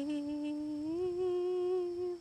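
A voice humming one long held note that dips at the start and rises slightly about a second in.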